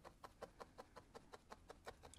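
Felting needle stabbing rapidly and lightly into loose wool fibres: a faint, even run of short clicks, about seven a second.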